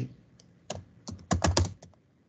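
Typing on a computer keyboard: a few scattered keystrokes, then a quick burst of them in the second half.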